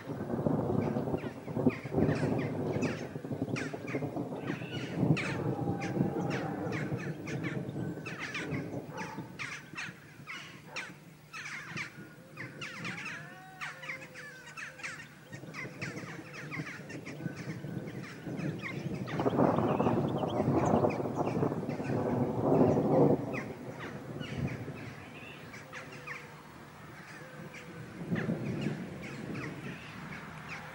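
Harsh, rasping calls of a Eurasian golden oriole in long bouts: one through the first several seconds, another about two-thirds of the way in, and a shorter one near the end. Between them come quick high chirps and a few short gliding whistles.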